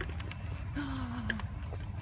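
A person's single short 'ha', a falling voiced sound about a second in, over a low steady rumble on the microphone, with a brief hiss and a couple of light clicks.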